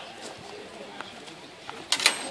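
Steel rapier blades clashing: a few light ticks of blade contact, then one sharp, loud clash with a brief ring near the end.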